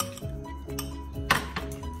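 Background music with two sharp clinks, one at the start and a louder one a little past halfway: a spoon knocking against a glass mixing bowl as crushed ginger is scraped into it.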